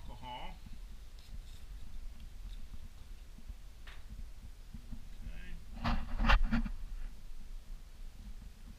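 Low room noise with faint handling sounds from gloved hands working with swabs and instruments. A short burst of unclear voice comes about six seconds in and is the loudest moment.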